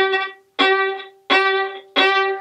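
Violin playing martelé, the same note bowed in short separate strokes. Each stroke has a sharp, bitten start and fades away before the next; there are three, with a fourth beginning right at the end.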